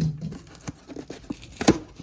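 Cardboard box being opened by hand: cardboard and packing tape scraping and tearing with scattered clicks, and one sharp crack near the end.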